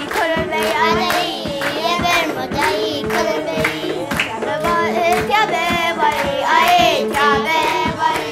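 A small group of young girls singing a traditional Ethiopian holiday song together, keeping time with steady rhythmic hand-clapping.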